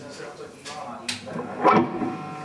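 Low background noise with a brief spoken sound near the end; no guitar is being played.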